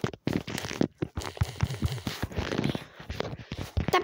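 Fingers tapping on a phone's touchscreen keyboard close to the microphone: a run of quick, irregular clicks mixed with rustly handling noise.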